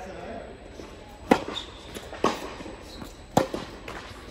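Tennis ball hit by rackets and bouncing on an indoor hard court: three sharp pops about a second apart, each with a short echo off the hall.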